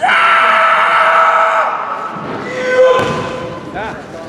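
Kendo fighters' kiai: a long, high, sustained shout lasting nearly two seconds, then a second, lower and shorter shout about two and a half seconds in.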